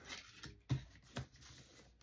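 A deck of oracle cards being shuffled by hand: a few short, soft clicks of cards knocking together over a light rustle.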